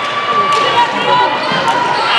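A volleyball bouncing on a hard sports-hall floor, two sharp bounces about a second apart, over the voices of players and spectators in the hall.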